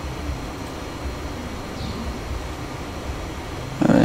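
Steady background noise: a low rumble with faint hiss and no distinct events.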